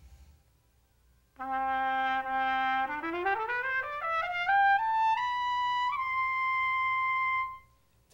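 Solo trumpet playing an ascending scale of about two octaves: a held low first note, a quick stepwise climb, and a long held top note that stops cleanly.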